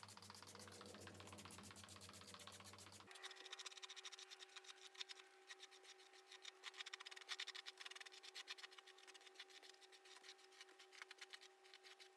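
Faint, quick strokes of a hairbrush through long curly hair, over a low steady hum.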